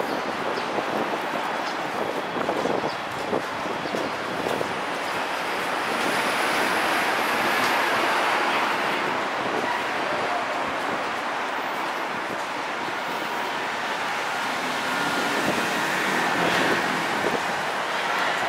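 Road traffic passing on a city street, a steady rush of vehicles that swells twice, about a third of the way in and again near the end.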